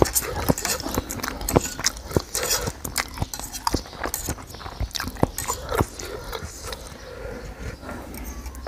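Close-miked chewing and mouth smacking of crunchy squid salad: a dense, irregular run of wet clicks and crunches.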